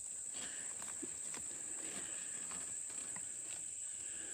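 Steady high-pitched chorus of insects in a summer field, with a few faint rustles of a corn husk being handled.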